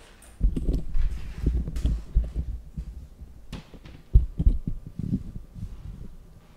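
Handling noise close to the microphone: a run of low thumps and rumbling knocks as the camera is moved and set back in place, with one sharper knock about four seconds in.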